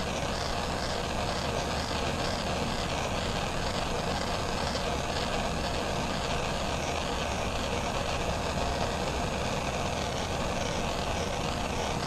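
Handheld propane torch burning with a steady, even hiss, its flame held against an aluminium soda can.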